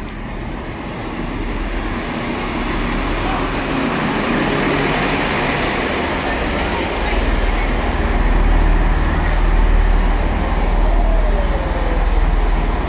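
British Rail Class 158 diesel multiple unit running into the station alongside the platform, its diesel engine and wheels on the rails growing louder as the carriages pass close by. The low rumble deepens about halfway through as the unit draws level.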